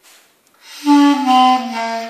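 Clarinet being played: after a breathy start, three held notes step downward in pitch.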